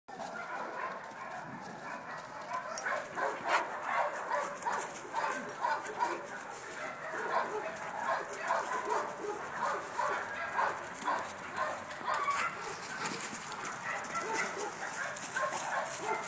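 Two young shepherd-type dogs barking in play as they wrestle, a rapid run of short barks, over the crackle of dry leaves under their paws.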